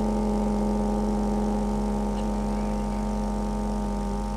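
Worshippers chanting a long, held "Om" together, the closing hum sustained on one steady pitch and slowly fading.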